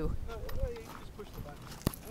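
A video camera being handled and passed from hand to hand: rubbing and bumping on the body with low rumble on the microphone, and a single sharp click near the end.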